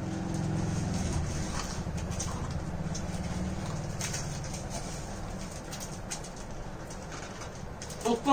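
Maggi noodles being slurped and chewed straight off plates with no hands, heard as scattered short wet clicks and slurps over a steady low hum that slowly fades.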